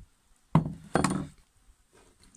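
Two knocks about half a second apart: a vintage axe with a steel head and wooden handle being set down and shifted on wooden planks.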